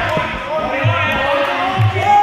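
Voices calling out around a kickboxing ring, with short low thuds about once a second.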